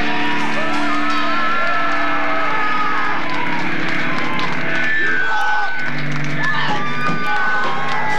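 Amplified band instruments sustaining at the close of a live song, mixed with the crowd cheering and whooping.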